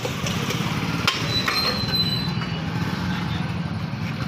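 A vehicle engine running steadily over street noise, with a few light clicks and a short high tone about a second and a half in.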